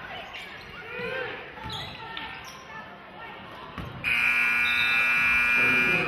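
Gym scoreboard horn sounding one steady blast of about two seconds, starting suddenly about four seconds in and louder than everything else; before it, crowd chatter and a few basketball bounces on the hardwood floor.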